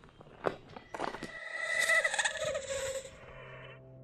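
A horror sound effect: a couple of soft knocks, then a wavering, shrill sound lasting about two and a half seconds. A low drone comes in near the end.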